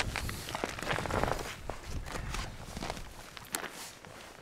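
Irregular crunching steps and scuffs on snow-covered lake ice, growing fainter toward the end.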